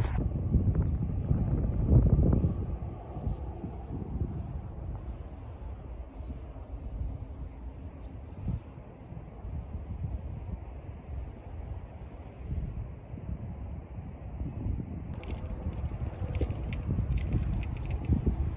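Wind buffeting the microphone in gusts, strongest about two seconds in and then easing to a lower rumble.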